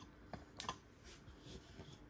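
A few faint, light clicks and taps of trading cards and a clear plastic card stand being handled, the loudest about two-thirds of a second in.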